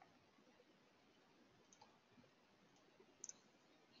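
Near silence: room tone, with a faint quick double click of a computer mouse a little over three seconds in.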